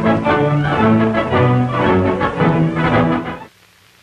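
Orchestral music led by bowed strings, several held notes sounding together, which stops suddenly about three and a half seconds in.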